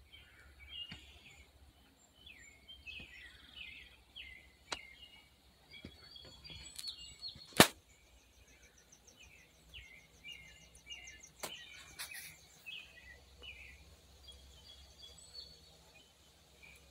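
Small birds chirping and calling in short, high notes again and again. A few sharp clicks cut through, the loudest about halfway through, and a fast, very high ticking trill runs for a couple of seconds soon after.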